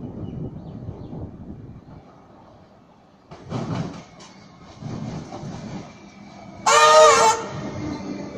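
Electric suburban train arriving at a station platform, its wheels rumbling and clacking over the rails in uneven surges, then a short horn blast of about half a second near the end, the loudest sound. A faint steady whine follows the horn.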